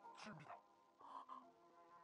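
Very faint audio from a Japanese anime episode, near silence overall: a steady held tone, with two short snatches of a voice speaking, one right at the start and one about a second in.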